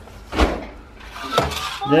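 Two soft knocks, about half a second and a second and a half in: a baby's hands slapping a tile floor as he crawls.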